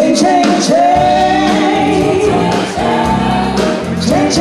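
A woman singing live into a microphone with a band behind her on drums and bass guitar, holding long, wavering notes. The band and voice come in loudly right at the start, with cymbal strikes over the top.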